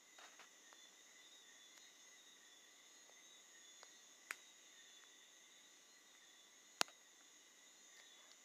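Near silence: a faint, steady high-pitched background tone, broken by two short clicks, one about four seconds in and one near seven seconds.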